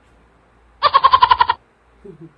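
A single goat bleat, a loud high trembling call lasting under a second, inserted as a comic sound effect.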